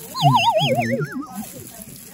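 A cartoon-style comedy sound effect: a wobbling whistle tone sliding downward for about a second, the 'oops' kind of sting. Low voice sound runs beneath it.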